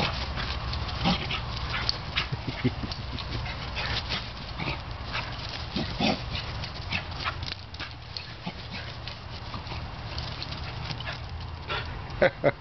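A beagle playing rough with a plush toy, giving a few short vocal noises amid quick rustles and taps, over a steady low hum.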